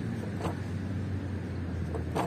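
Steady low hum of distant road traffic, with one short sharp sound about half a second in from a person doing pull-ups on an outdoor bar.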